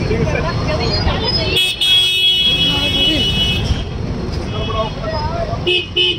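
A vehicle horn in stalled street traffic, sounding steadily for about two seconds starting a bit over a second and a half in, with another short honk near the end. Low traffic noise runs underneath, along with voices of people close by.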